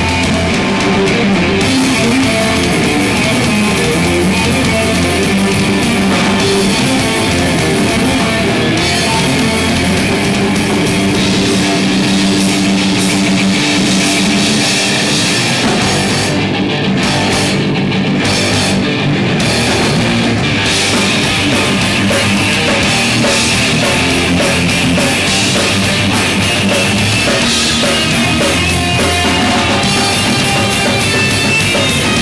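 Live heavy metal band playing loudly: electric guitar over a drum kit, with no singing. A little past halfway the cymbals drop out in a few short breaks.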